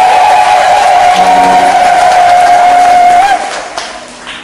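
Public-address microphone feedback: a loud, high-pitched howl held at one steady pitch, which stops about three seconds in.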